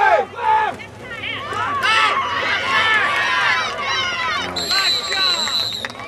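Several people shouting over one another during a youth football play. Near the end a referee's whistle blows one long steady blast, blowing the play dead after the tackle.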